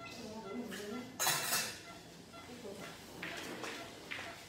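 Steel surgical instruments clinking against a metal tray, with one short, loud clatter about a second in.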